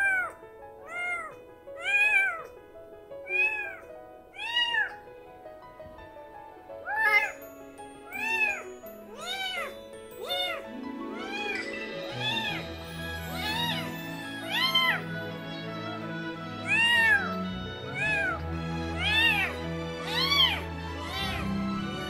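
A newborn kitten meowing over and over, about one cry a second, each cry rising and then falling in pitch: it is protesting while being stimulated to go to the toilet.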